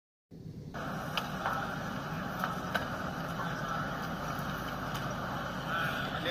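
Steady hiss and hum of indoor practice-facility ambience, with a few faint sharp clicks. It starts abruptly after a moment of silence.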